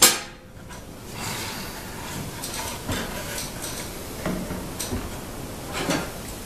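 Metal bar clamps clinking and wood knocking as a clamped wooden jig is handled: one sharp clack at the start, then scattered lighter knocks.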